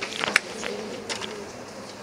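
Lecture-hall background: a faint murmur of voices with a few light clicks, the sharpest about a third of a second in.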